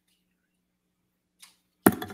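A faint steady hum, then a sudden loud thump near the end that dies away quickly.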